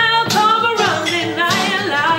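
A woman singing a soul ballad with strong held, bending notes, over a strummed acoustic guitar.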